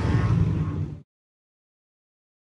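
Outdoor wind and vehicle engine noise that cuts off abruptly to complete silence about a second in.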